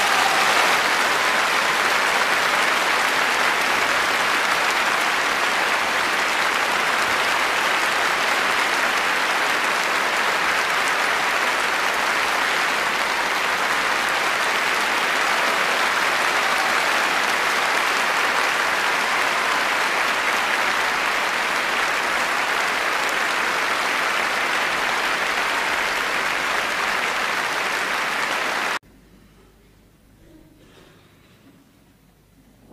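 Concert audience applauding, a steady, sustained ovation that cuts off suddenly near the end.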